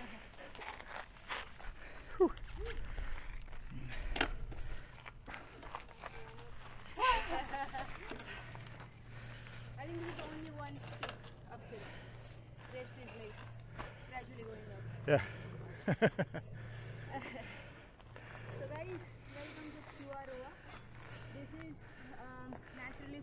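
Faint, indistinct talking with a few sharp clicks and knocks, over a low steady hum through the middle.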